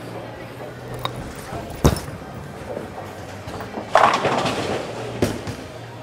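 A bowling ball released onto the lane with a sharp thud about two seconds in, rolling, then crashing into the pins with a clatter about two seconds later.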